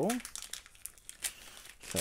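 Foil wrapper of a Pokémon trading card booster pack crinkling as it is torn open and peeled back by hand, with irregular crackles.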